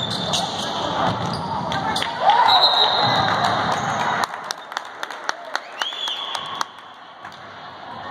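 A basketball dribbled on a hardwood gym floor, about three bounces a second, in the second half, with a few high sneaker squeaks. Before that, spectators' voices and general game noise echo around the gym, louder about two seconds in.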